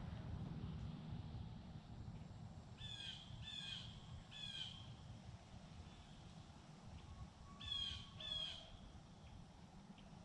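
A bird calling outdoors: three short calls in quick succession about three seconds in, then two more near the end, over a steady low background rumble.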